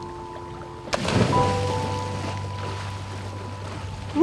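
A person diving into the sea: a sharp smack and splash of water about a second in, fading after. Background music with long held notes plays throughout.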